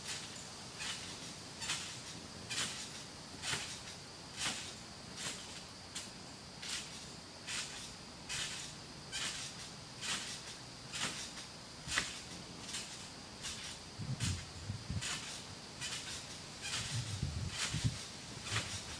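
Insect calling outdoors: a steady high buzz with short, evenly spaced chirps about once a second. A few dull low thumps come near the end.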